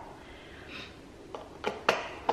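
Kitchen items being handled: a faint soft hiss near the middle, then three light clicks in the last second, the last the loudest.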